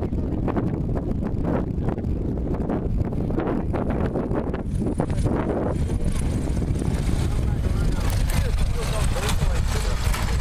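Light single-engine propeller airplane landing on a grass strip and rolling out past at low throttle, with wind buffeting the microphone.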